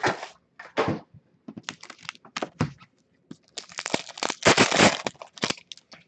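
A 2015-16 Upper Deck Ice hockey card pack's wrapper being torn open and crinkled, in an irregular run of sharp crackling bursts that is densest about four to five seconds in.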